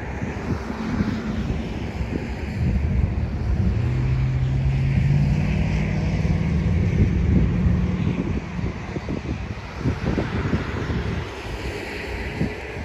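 Wind buffeting the microphone in an irregular low rumble, with the steady low drone of a passing engine rising out of it a few seconds in and fading away after about five seconds.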